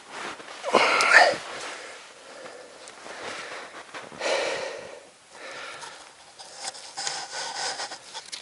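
Snow being brushed and scraped and winter clothing rustling as a snow-capped trap on a pole is handled by hand. The sound comes in irregular bursts, loudest about a second in.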